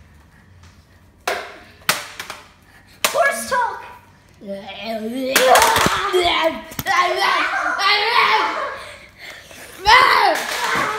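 Three sharp knocks in the first three seconds, then children's voices calling and crying out without clear words, in a small room.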